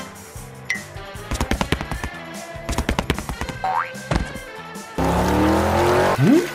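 Cartoon sound effects: a run of quick clattering taps, then a springy boing that glides up and back down. About five seconds in, a loud rush of water begins as a garden hose starts spraying.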